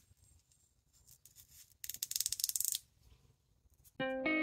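A stiff turkey feather being handled by hand, giving a burst of rapid dry rattling clicks for about a second midway, with faint scattered ticks around it.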